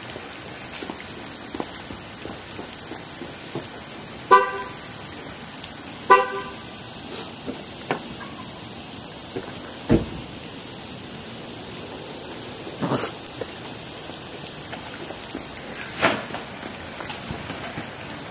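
Steady rain falling, with a car horn chirping twice, a couple of seconds apart, a few seconds in. A single dull thump comes near the middle, with fainter knocks later.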